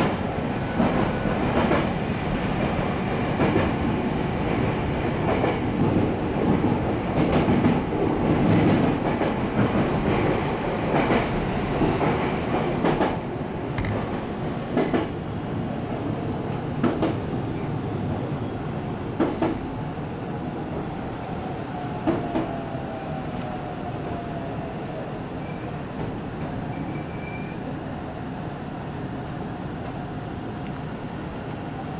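313 series electric train running on the rails, heard from the cab: a steady rumble of wheels and running gear, louder in the first half, with scattered sharp clacks from the rail joints. In the second half it grows quieter and a faint falling whine comes in as the train slows toward a station.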